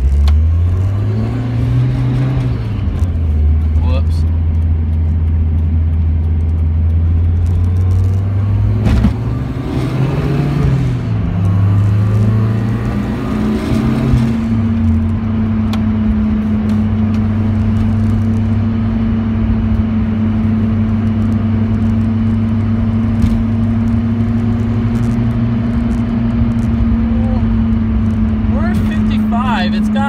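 A vehicle's engine heard from inside the cabin as it accelerates. Its pitch climbs and drops back at each gear change, about three times in the first fifteen seconds, then it holds a steady drone at cruising speed.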